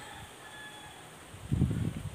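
Quiet outdoor background with a few faint, thin high tones, then about one and a half seconds in a brief loud low rumble of noise right on the phone's microphone.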